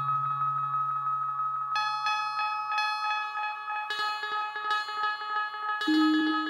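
Two-voice Eurorack modular synthesizer playing a generative ambient piece through heavy delay. A low sustained bass note fades out over the first few seconds under a steady high held tone. From about two seconds in, short plucked notes ring out and repeat as delay echoes.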